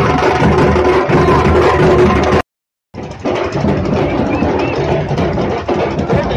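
Festival drumming: several drums beaten with sticks, with a steady held note over them. It cuts off abruptly about two and a half seconds in. After half a second of silence, another stretch of drumming and music starts.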